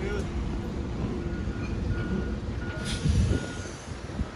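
A vehicle's reversing beeper sounds a string of short, single-pitch beeps over steady city-street traffic rumble. A louder burst of noise comes about three seconds in.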